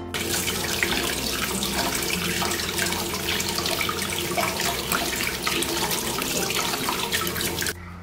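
Tap water running steadily over an apple rubbed by hand and splashing into a stainless steel bowl in the sink. It cuts off just before the end.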